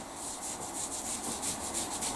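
Fingers rubbing through short-cropped hair, a quick, even run of strokes.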